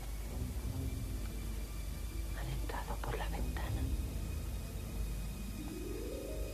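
Hushed whispering from two people over a low steady hum, with a short rising tone near the end.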